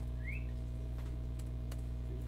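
A few faint computer keyboard key clicks over a steady low hum, with a short rising whistle-like chirp near the start.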